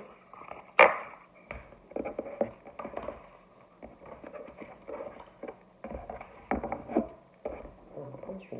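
A deck of cards being handled and shuffled on a table: scattered light clicks and taps, with one much louder sharp snap about a second in.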